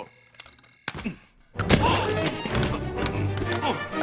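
Cartoon fight soundtrack. The first second and a half is fairly quiet, with one short vocal sound. Then loud action music starts, mixed with thuds and short grunts.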